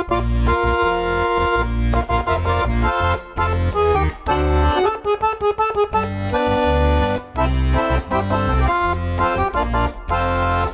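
Weltmeister piano accordion playing an instrumental introduction: a melody in chords over a pulsing bass line.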